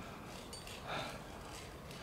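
Quiet background noise with one faint, short sound about a second in.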